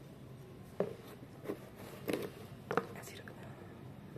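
Handling noise from a metal spinning reel and its cardboard box: about five soft, scattered clicks and knocks as it is moved and set down.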